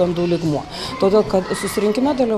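Only speech: a woman talking in an interview, with a short pause about half a second in.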